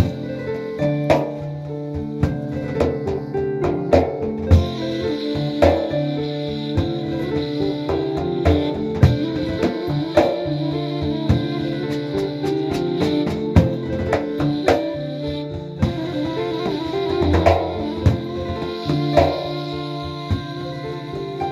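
Live acoustic trio of bamboo flute, kora and hand-struck frame drum playing together: held flute notes over plucked kora strings, with sharp drum strokes falling at uneven intervals.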